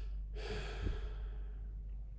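A singer's audible breath between sung phrases: a breathy rush starting about a third of a second in and fading over about a second, with a soft low thump near the middle. A steady low hum runs underneath.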